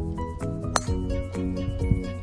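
Background music, with one sharp click of a driver's head striking a golf ball off the tee a little under a second in.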